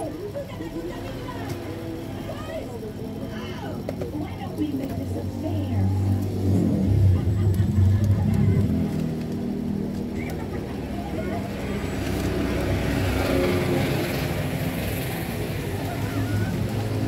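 A motor vehicle engine running nearby, swelling to its loudest about halfway through, with indistinct voices in the background.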